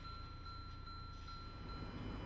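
A faint, steady, high chime-like electronic tone that stops just before the end, over a low hum.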